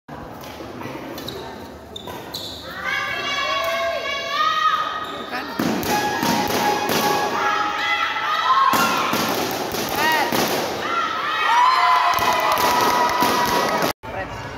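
Badminton doubles rally: sharp racket hits on the shuttlecock and repeated sneaker squeaks on the court floor, with voices calling out.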